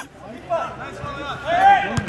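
Men's voices shouting and calling out, with no clear words, and one louder, longer shout near the end.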